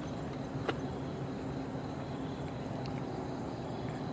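Steady low rumbling background noise, with one faint click just under a second in.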